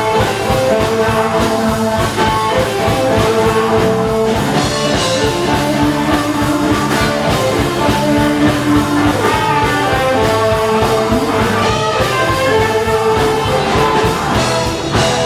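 Live blues band playing an instrumental passage: electric guitar lead lines with held and bending notes over electric bass and drum kit, amplified through the stage amps.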